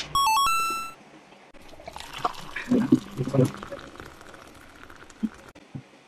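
A short electronic sound effect of a few stepped tones plays in the first second. Then milk pours from a bottle into a glass with a steady hiss for about four seconds, under some low talk.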